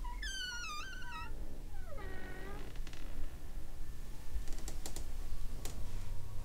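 A door's hinges creaking as the door swings open slowly: a long, wavering creak, then a second one that slides down and holds. A few faint clicks follow near the end.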